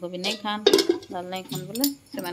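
Flat steel spatula scraping and clinking against a kadai while stir-frying onions, with one sharp clink about two-thirds of a second in. Someone talks over it.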